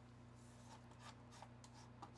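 Near silence: room tone with a low steady hum and a few faint ticks.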